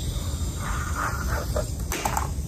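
Air hissing steadily out of a balloon through a drinking straw as a balloon-powered cardboard car is pushed across a desk, with a sharp knock near the end.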